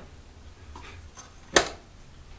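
Metal ash cleanout door at the base of a fireplace chimney being swung shut, with one sharp clank about one and a half seconds in.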